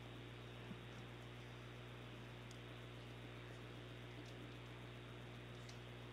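Near silence: a faint, steady hiss with a low electrical hum from the broadcast feed, with no distinct sounds.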